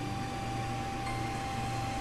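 Steady background hum and hiss with a faint continuous high tone running through it; no distinct event.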